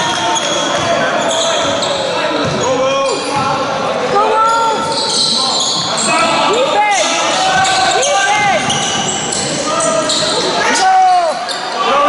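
Basketball being played on a sports-hall floor: the ball bouncing and many short, rising-and-falling squeaks of trainers on the court, with voices calling out, echoing in a large hall.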